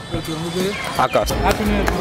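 Talking voices over background music with a deep, pulsing bass beat.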